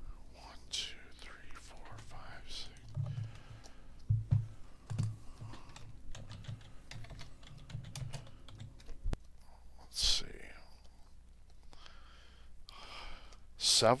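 Faint computer keyboard typing, uneven clicks and taps, mixed with low, indistinct mumbling.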